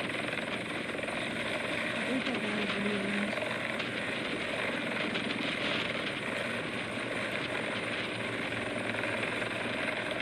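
NYPD police helicopter lifting off and hovering low, its rotor and turbine noise running steadily. It is heard played back through a screen's speakers.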